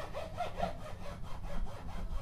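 Hands rubbing and pressing on a Martin acoustic guitar's wooden neck, a rhythmic rasping rub, as the neck is pressed gently to seat a just-tightened truss rod.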